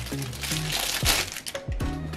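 Plastic doll wrapping crinkling and crackling as hands pull it open, heaviest in the first second, over steady background music.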